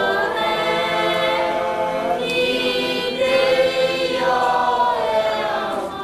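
A group of voices singing slowly together, holding long notes that change pitch every second or two.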